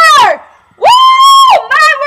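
A girl's high-pitched wordless vocalising: a falling squeal, then about a second in a loud held high note for under a second, followed by quick short yelps.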